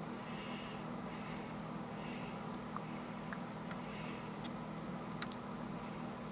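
Wooden rotary marble lift turning slowly: a few light clicks of glass marbles against the wooden cam and track, with a soft rubbing now and then, over a steady low hum.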